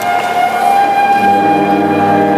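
Brass band playing a sustained passage: a long held high note, joined about a second in by lower brass on a held chord.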